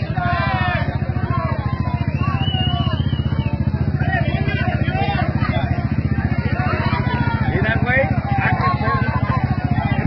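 An engine running steadily close by, under a crowd of people shouting.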